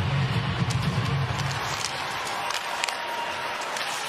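Ice hockey arena sound during live play: a steady crowd din with a few sharp clacks of stick and puck. A low drone runs through the first second and a half.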